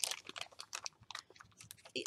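Light, irregular clicking and crinkling of a small plastic packet of seed beads being handled.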